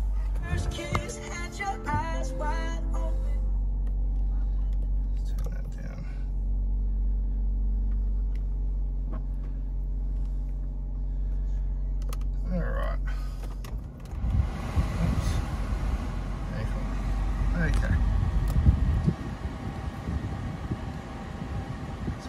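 2020 Kia Sportage engine just started, its fast idle falling and settling into a steady low idle. About two-thirds of the way through, a steady rushing noise joins the engine.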